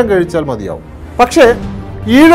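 A man speaking in Malayalam, in short bursts, over a steady background music bed.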